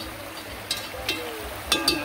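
A spoon clinking against a dish while curry powder is mixed with water: a few sharp, short-ringing clinks, two close together near the end.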